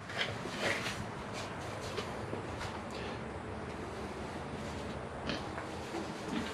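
Soft, irregular footsteps and light rustles over a faint steady background hiss.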